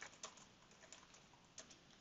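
Faint keystrokes on a computer keyboard: a few short, irregular taps as text is typed.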